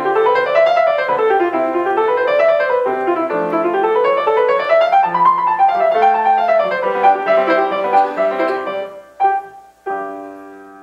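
Yamaha grand piano played in fast runs of notes that sweep up and down, recorded through the Nikon D7100's built-in camera microphone. Near the end the playing thins out and a short chord sounds just before it stops.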